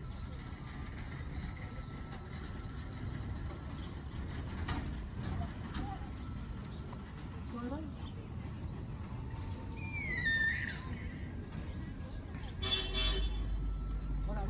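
A short vehicle horn toot near the end, over a steady low outdoor rumble. About ten seconds in there is a brief falling whistle.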